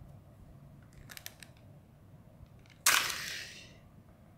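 A few faint plastic clicks about a second in, then a sudden loud clatter that dies away over about a second: a plastic toy helicopter crashing into a plastic toy bulldozer on a tile floor.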